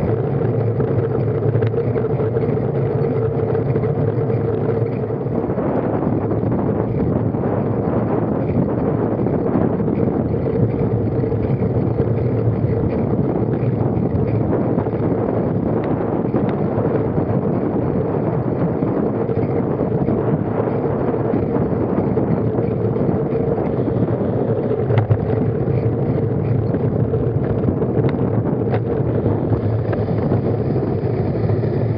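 Steady wind rush over an action camera's microphone and tyre rumble from a road bike riding at speed, with a few faint clicks in the second half.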